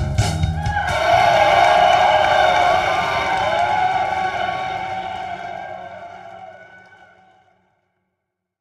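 A band's closing hits on drums and electric guitar in the first second, then a held electric guitar note with a wavering vibrato that rings on and fades away to silence over about six seconds.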